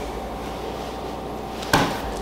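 Room tone with a steady low hum, and a single short, sharp sound near the end.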